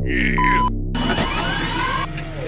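Cartoon sci-fi machine sound effects from a cloning pod: a steady low electric hum with a short beep about half a second in, then about a second in a loud hissing whoosh with rising sweeps as the pod opens.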